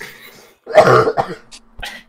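A single loud, harsh cough, about half a second long, about a second in, followed by a brief laugh.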